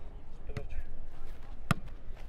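A football struck once, a single sharp hit about three-quarters of the way in, over a low steady rumble; a brief voice is heard about a quarter of the way in.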